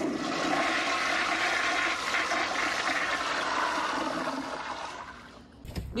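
Toilet flushing: a sudden rush of water that runs steadily for about five seconds, then dies away.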